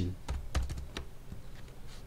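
Computer keyboard being typed on: a handful of separate short key clicks as digits are entered.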